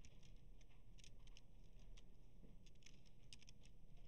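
Faint, irregular clicks of computer keyboard keys being typed, a few keystrokes at a time, over a low steady room hum.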